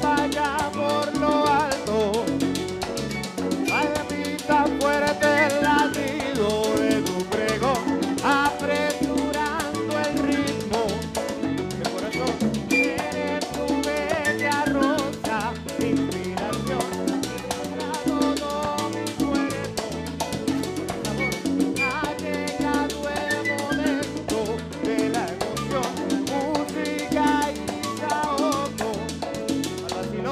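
Live salsa played by a charanga band: violin, electric bass, congas, timbales and keyboard over a steady, driving Latin rhythm.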